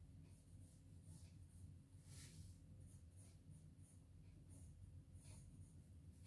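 Faint scratching of a pencil drawing light strokes on sketchbook paper, in short irregular strokes over a low steady hum.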